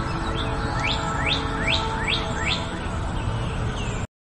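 A bird singing a run of about five quick chirps, each rising in pitch, over steady background noise.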